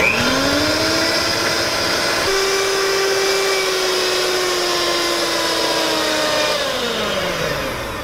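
Electric hand mixer running on high speed, its beaters whipping heavy cream into a cream cheese mixture until it doubles in volume. The steady motor whine steps up in pitch about two seconds in and winds down in pitch near the end as the mixer is switched off.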